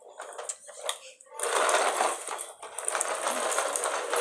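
Rustling and clattering of objects being handled: a few light clicks, then dense, louder rustling and rattling from about a second and a half in.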